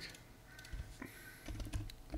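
A few faint keystrokes on a computer keyboard, typing.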